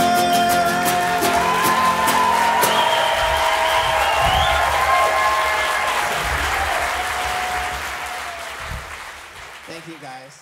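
The last notes of a live song on a small acoustic guitar ring into audience applause and cheering, which dies away near the end.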